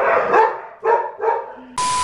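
Pet dog barking several times in quick succession. Near the end a steady beep tone with static cuts in suddenly, a TV colour-bars transition sound effect.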